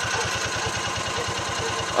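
Engine of a Gator utility vehicle running steadily, with an even low pulse.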